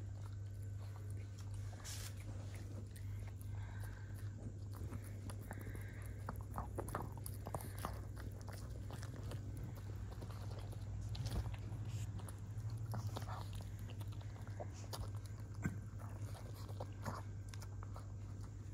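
Shih Tzu biting and chewing a piece of crispy fried chicken: irregular crisp crunches and bites, over a steady low hum.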